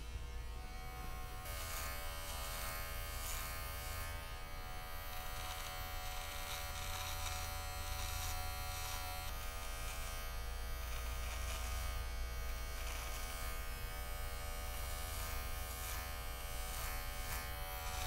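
Electric beard trimmer buzzing steadily as it is run over the neck to trim in the beard neckline.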